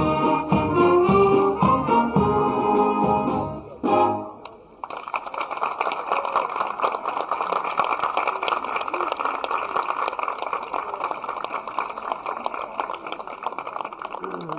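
Wind band of brass and reeds playing, closing on a final chord about four seconds in. Then steady audience applause.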